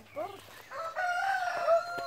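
A rooster crowing: one long, held crow that begins under a second in.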